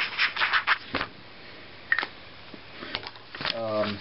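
Felt-tip marker scratching across paper in a quick run of short strokes in the first second, as a wavy line is drawn, followed by a few scattered light clicks and taps.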